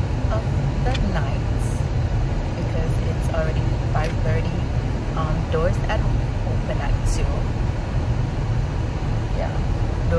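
Steady low rumble of road and engine noise inside a moving car's cabin, with a woman talking over it.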